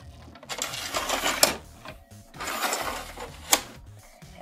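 Plastic toy house being handled: two stretches of rattling and scraping, each ending in a sharp click.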